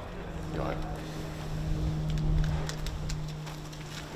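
A vehicle engine running steadily at a low pitch, over a rumble that swells near the middle and then eases.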